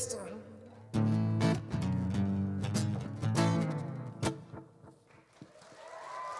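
Amplified guitar strummed in closing chords that ring out and fade away, right after the last sung note of the song.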